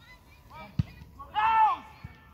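A football kicked with a single sharp thud about a second in, followed by a player's loud, drawn-out shout across the pitch.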